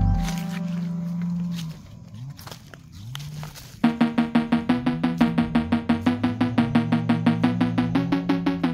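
Background music: low sliding notes at first, a quieter stretch, then from about four seconds in a fast pulsing beat of about four pulses a second.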